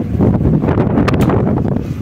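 Wind buffeting an outdoor phone microphone, a loud, uneven rumble, with a couple of brief clicks a little after a second in.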